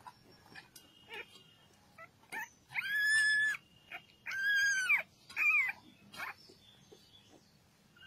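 A young puppy crying in high-pitched whines: two long, level cries about three and four and a half seconds in, then a shorter cry that falls in pitch, with small squeaks in between.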